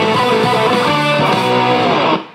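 Electric guitar with humbucking pickups playing the song's melody, a dense run of notes over full, sustained tones.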